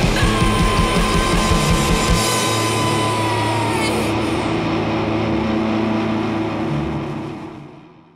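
A post-punk band playing live, with electric guitar, bass and drums, at the end of a song. The drum and bass beat stops about two seconds in, and the held guitar and bass chord rings on and fades out near the end.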